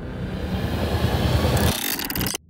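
Promo sound-design effect: a noisy whoosh swelling and rising over a low rumble. It breaks off sharply near the end into a rapid run of glitchy clicks.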